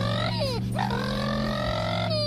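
A dog's drawn-out vocalizing: one long, pitched call that slides in pitch, dips and breaks briefly about half a second in, then rises again and holds, over a steady low drone.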